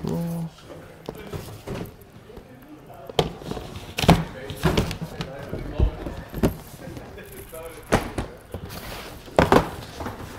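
Sneakers and cardboard shoe boxes handled on a counter: about six separate knocks and thunks as shoes go into a box and box lids are opened and set down.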